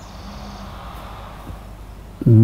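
Steady background room noise during a pause in a man's speech, with a soft click about one and a half seconds in.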